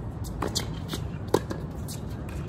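Tennis ball struck by racquets and bouncing on a hard court during a doubles point: a string of sharp pops, the loudest just over a second in.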